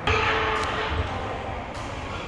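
Busy gym ambience with rustling handling noise on the camera microphone as the camera is moved, and a few soft low thuds.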